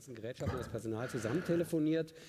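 Speech only: a man's voice talking quietly, lower than the louder speech just before and after.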